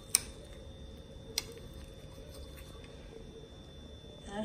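A metal fork clicks against a ceramic plate as it cuts through a crepe: a sharp click right at the start and a weaker one just over a second later, over a faint steady hum.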